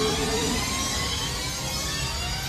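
Film sound effect of X-wing starfighter engines as the squadron flies past: a steady, dense rush with whining tones that glide slowly in pitch.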